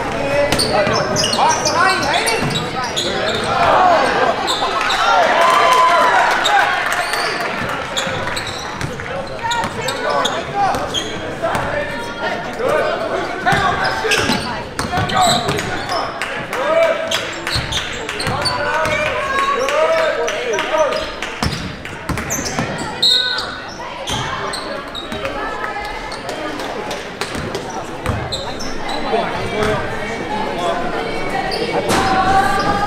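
Basketball game sound in a gym: the ball dribbled and bouncing on the hardwood court, with shouting voices from players and spectators throughout, echoing in the large hall. The voices swell for a few seconds near the start.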